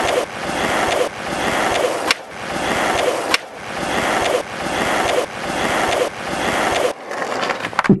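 Skateboard wheels rolling back and forth across a half-pipe ramp, the rumble building and breaking off in repeating swells about once a second, with two sharp clacks of the board about two and three seconds in.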